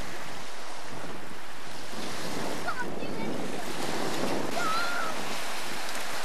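Small waves washing onto a shingle beach, a steady hiss, with wind buffeting the microphone. A few faint distant voices call out in the middle and near the end.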